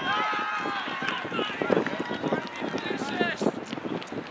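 Several voices shouting and calling out across a soccer game, opening with one long drawn-out shout.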